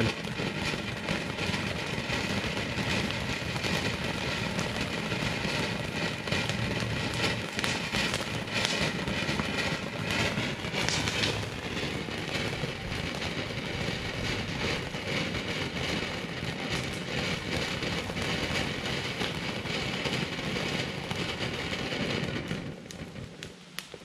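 Ground fountain firework ("Snowstorm") spraying with a steady, dense crackling hiss that fades out near the end as it burns down.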